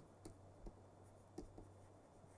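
Near silence: a few faint ticks of a stylus on a pen tablet as words are handwritten, over a faint low hum.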